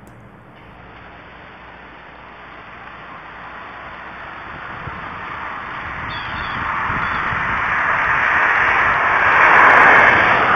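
A car approaching on the street, its tyre and engine noise growing steadily louder and loudest near the end as it nears, heard through a security camera's hissy microphone.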